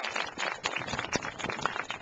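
Scattered hand clapping from a small outdoor crowd, a quick run of uneven claps.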